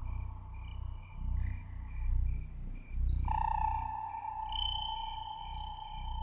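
Ambient background music of steady held high tones over a low, slowly pulsing drone; a louder tone comes in about three seconds in.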